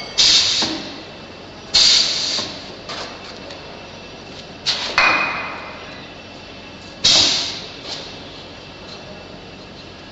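Pneumatic cylinder and air valve on a chisel mortiser, letting out compressed air in four sharp hisses, each fading within about half a second, with a few light knocks from the machine in between.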